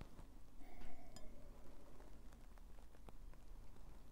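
Quiet sipping from a stemmed glass: a few faint, soft clicks over low room tone.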